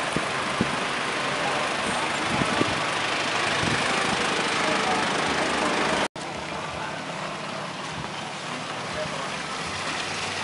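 Steady outdoor background noise with faint voices. About six seconds in it cuts out for a moment at an edit, then carries on a little quieter.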